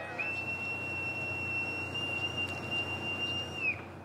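A boatswain's call (bosun's pipe) sounding one long, steady, high-pitched note for about three and a half seconds, dropping away briefly at the end, over a low steady background noise.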